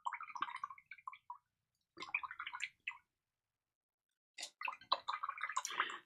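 A paintbrush being swished and rinsed in a small pot of water, in three short, quiet bouts of sloshing with pauses between.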